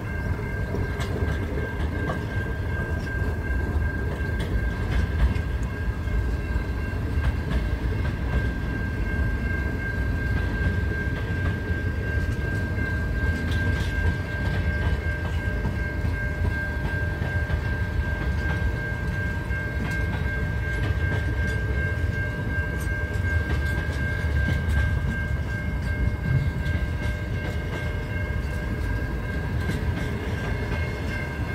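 Pacific National freight train's container wagons rolling past: a steady low rumble of steel wheels on rail with faint clicks over the rail joints, and a steady high whine held throughout.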